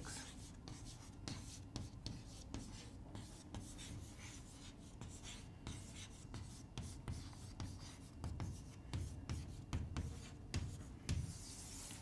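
Chalk writing on a chalkboard: faint, quick taps and scratches of the chalk strokes as a line of words is written out.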